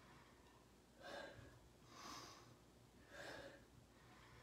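Faint breathing of a woman doing push-ups: three short exhales about a second apart, in time with the reps.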